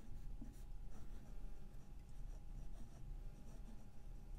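Medium gold nib of a Pilot Custom 823 fountain pen writing on a paper card: faint, irregular scratching pen strokes with short breaks between letters.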